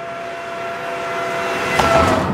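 A motor vehicle approaching on a road, its engine hum and road noise growing steadily louder, with a sharp click near the end.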